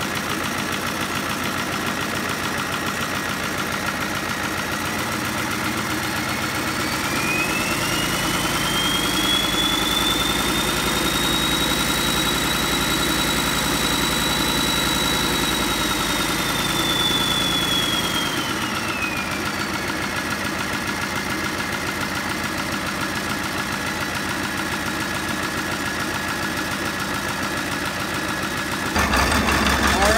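Marinized, turbocharged 7.3 IDI V8 diesel running on a test stand. It idles, then is brought up in speed a few seconds in, and the turbo's whistle climbs and holds high for about ten seconds before engine and whistle settle back to idle around two-thirds of the way through.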